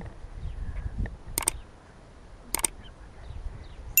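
Two sharp double clicks about a second apart over a faint low rumble.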